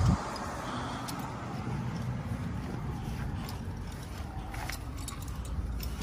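A 2009 Honda Accord's V6 engine idling steadily, with a short knock right at the start and a few light clicks over it.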